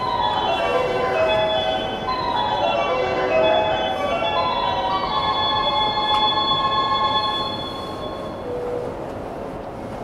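Inverter and traction motors of a JR E233 series electric motor car whining in a series of stepped tones over the rumble of the running train. The tones die away and the sound drops near eight seconds in.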